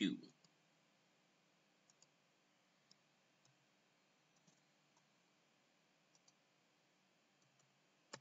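Faint, scattered clicks from a computer mouse and keyboard, about a dozen spread unevenly over several seconds, some in quick pairs, over near-silent room tone.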